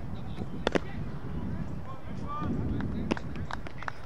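Cricket ball meeting the bat just after a delivery: two sharp knocks in quick succession about two-thirds of a second in, the loudest sound here. A lighter knock comes about three seconds in, over a steady low rumble.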